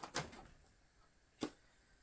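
Two faint clicks about a second and a quarter apart as a light strip's power plug is pushed into a portable battery power station and switched on.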